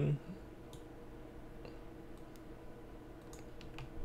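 About five faint, sharp computer mouse clicks, spaced roughly a second apart, over a steady low hum of room noise.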